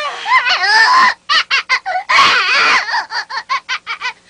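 High-pitched cartoon voices squealing and laughing, with quick strings of short bursts of laughter after the first second.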